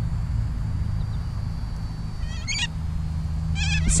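Two short bursts of bird calls, one about two seconds in and one just before the end, over a steady low outdoor hum.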